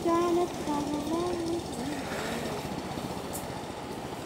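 A man's voice speaks for the first second or two over a steady low rumble, then only the rumble continues.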